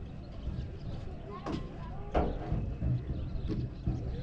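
Outdoor harbour ambience: wind rumbling on the microphone, with faint distant voices. Two sharp knocks come about a second and a half and two seconds in, the second the louder.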